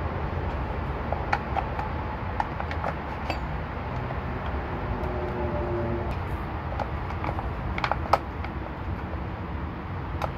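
A steady low background rumble with scattered light clicks and taps of small parts being handled, the sharpest tap about eight seconds in.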